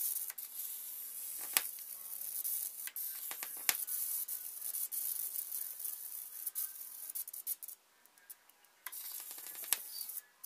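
High-voltage arc from a ZVS-driven flyback transformer: a steady hiss with sharp snaps, the loudest about a second and a half in and near four seconds in. It drops out for about a second near eight seconds, then starts again.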